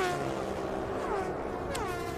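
Two Pro Stock drag-racing motorcycles under full throttle on a run down the strip. The engine note drops sharply in pitch a few times.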